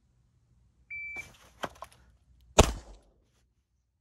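Electronic shot timer gives a short high start beep. A rustle of clothing and a couple of clicks follow as the Ruger LCR .22 LR snub-nose revolver is drawn from deep concealment. About 1.7 seconds after the beep comes a single sharp gunshot, the loudest sound, with a brief ring.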